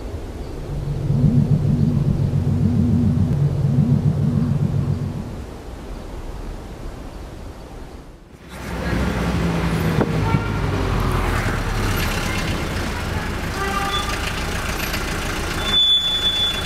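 A low warbling tone for the first few seconds, then a sudden change to busy street traffic: engines and road noise with several short car-horn toots, one high and loud near the end.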